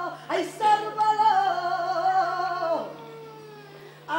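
A saeta: a single unaccompanied voice sings a long, ornamented flamenco-style phrase with a wavering vibrato. The line slides down and fades out about three seconds in.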